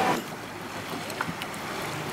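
Steady wind and water noise aboard a boat at sea, with a voice trailing off in the first moment.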